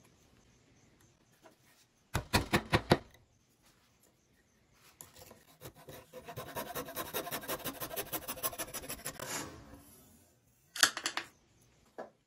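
Bare hacksaw blade sawing a wooden dowel plug flush with the wood surface, a long run of quick, even strokes of about six a second, with brief bursts of sharp strokes about two seconds in and near the end.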